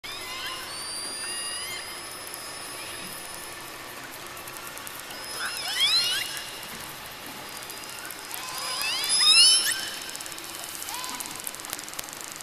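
Underwater recording of killer whale vocalizations. Long high whistles give way to two bursts of rising, many-toned calls, about six and nine seconds in; the second is the loudest.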